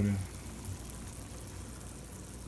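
Water at a rolling boil in a small saucepan on a gas stove: a steady bubbling hiss.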